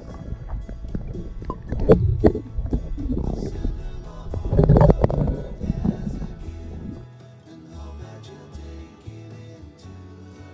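Background music throughout. For the first seven seconds it sits under loud, low gurgling and splashing water with sharp crackles, the sound of a camera held at or under a river's surface. After that only the music remains.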